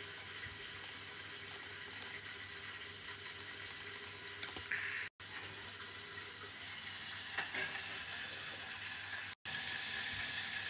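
A plastic spoon scraping and clicking faintly in a small metal cup of ice cream, over a steady hiss. The sound cuts out completely for an instant twice, about halfway and near the end.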